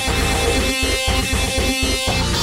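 Instrumental rock music made entirely in software, led by a guitar sound played in short, chopped strokes with brief gaps between them.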